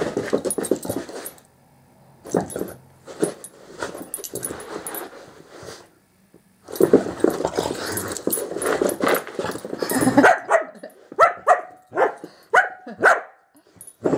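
A small dog barking and growling in play, ending in a quick run of short, sharp barks.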